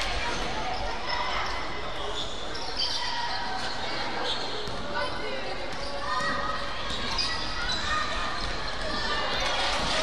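Basketball dribbled on a hardwood gym floor, with voices calling out across a large, echoing gymnasium.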